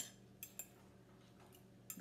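Mostly near silence, with a few faint clinks of a metal fork against a glass measuring cup holding rehydrating vegetables.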